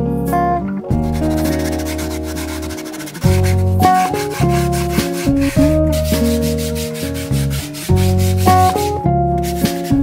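A sanding block rubbed by hand along the edges of an MDF box, in quick back-and-forth strokes, in two spells. Acoustic guitar background music plays throughout.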